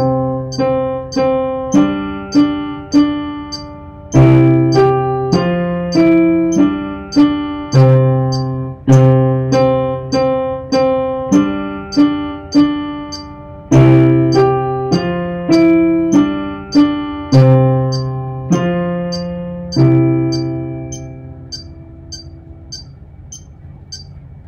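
Digital keyboard on its piano voice playing slow chords over low bass notes, with a metronome clicking steadily at 100 beats a minute. The last chord rings out and fades near the end.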